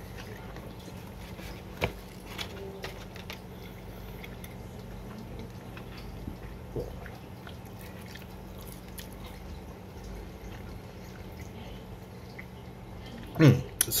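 A man chewing a mouthful of burger, with faint wet mouth clicks and one sharper click about two seconds in, over a low steady hum. Speech begins near the end.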